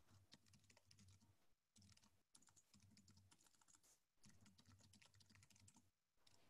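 Near silence, with faint clicks of typing on a computer keyboard scattered throughout.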